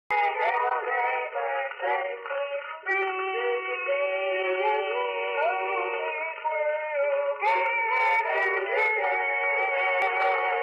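Boys' gospel quartet singing in close harmony, voices moving together through held chords that change a few seconds in and again near the end. The sound is thin and narrow, like an old radio recording.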